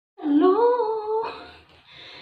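A woman humming one short note that slides up in pitch and holds for about a second, then fades out.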